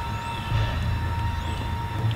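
A low, steady rumble that swells about half a second in, with two faint high chirps over it.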